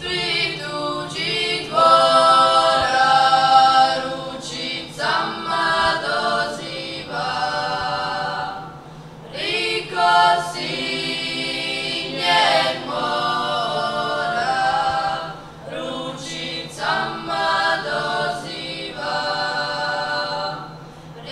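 A children's klapa, boys' and girls' voices together, singing unaccompanied in close harmony in the Dalmatian klapa style. The song goes in long held phrases with brief pauses for breath between them.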